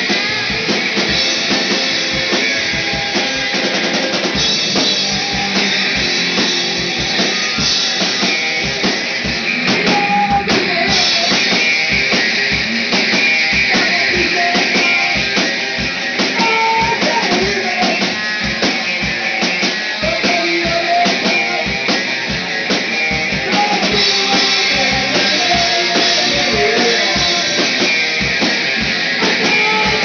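Garage punk band playing live: electric guitar and a drum kit, with a steady kick-drum beat running through.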